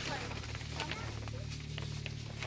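Faint voices in the background over a steady low hum, with a few small clicks and rustles of hands working a plastic wrapper.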